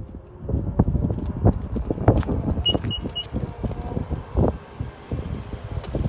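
Footsteps and handheld-camera handling knocks, irregular, while walking along a car. Three short, evenly spaced, high-pitched beeps come a little before halfway.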